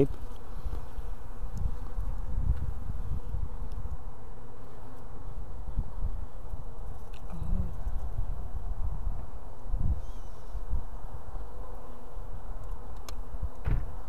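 Honey bees buzzing in a steady, continuous hum, with a single sharp click near the end.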